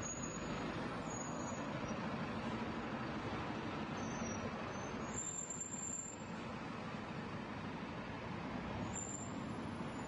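Street traffic: a car drives past across the junction in the first seconds over a steady hum of engines and tyres, which eases off about six seconds in.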